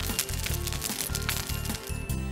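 Crackling fire in a fireplace: a quick, irregular scatter of small pops and crackles, with a soft children's music bed underneath.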